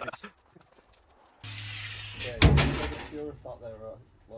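A cordless angle grinder runs for about a second with a steady hum and hiss. It is followed by a single loud bang, the loudest sound, and then a man's voice.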